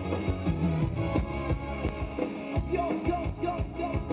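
Live band playing upbeat Thai ramwong dance music with a steady drum beat.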